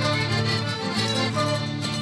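Instrumental passage of a Peruvian huayno, played by a live folk band: violin and plucked strings over a steady bass line, with no singing.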